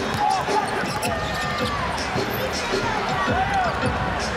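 Live NBA game sound on a hardwood court: a basketball being dribbled, with short squeaks from sneakers over the steady murmur of the arena crowd.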